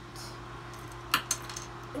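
Small plastic Lego pieces clicking as they are pressed together by hand: two sharp clicks just after a second in and a softer one near the end, over a steady low hum.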